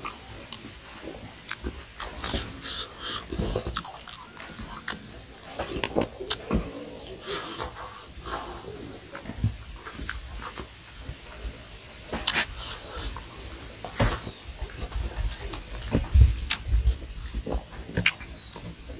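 Close-up eating sounds of a man chewing rice and smoked pork with his mouth: irregular wet smacks and clicks of lips and tongue, with a few dull thumps near the end.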